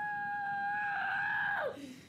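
A boy screaming one long held note, steady in pitch for about a second and a half and then dropping away, in the middle of an emotional meltdown.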